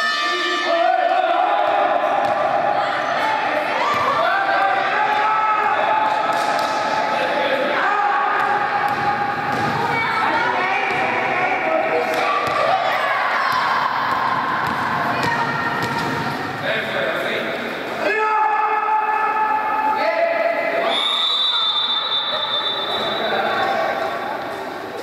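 Indoor basketball game: the ball bouncing on the court amid players' and spectators' shouting, echoing in a large gymnasium.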